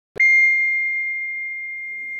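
A small bell struck once, ringing on in one clear high tone that slowly fades.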